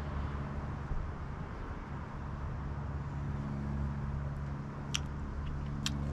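Steady low hum, like a running engine, with two or three faint short clicks near the end.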